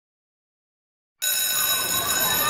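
A bell starts ringing suddenly about a second in and keeps up a steady, unbroken ring.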